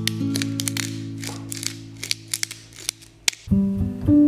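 Soft acoustic guitar music with held notes dying away, over a run of quick, irregular crisp clicks from a pepper mill being ground over the bowl. New music comes in about three and a half seconds in.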